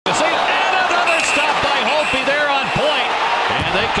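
Ice hockey arena game sound: a crowd of voices over knocks and slaps from sticks, puck and boards as players battle in front of the net.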